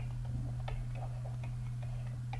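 Stylus of a pen tablet tapping and clicking faintly against the tablet surface while handwriting, a few separate clicks over a steady low electrical hum.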